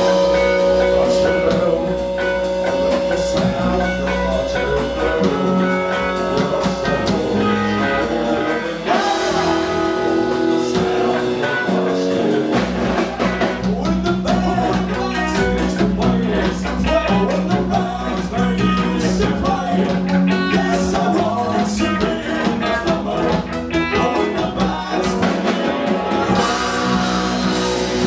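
Punk rock band playing live: electric guitar holding long chords and notes over a full drum kit with cymbals, loud and continuous.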